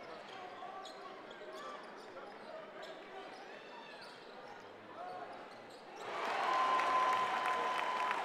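Basketball dribbled on a hardwood court amid arena crowd noise. The crowd grows louder about six seconds in, with a steady tone sounding over it.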